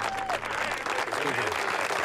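A crowd applauding, many hands clapping at once, with a few voices over the clapping.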